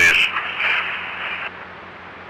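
Police scanner radio hiss left open after a transmission, a steady muffled static that cuts off about one and a half seconds in. A fainter steady noise remains after it.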